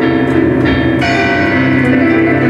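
Digital piano playing a loud, dense passage of chords that ring on, with fresh notes struck about two-thirds of a second and one second in.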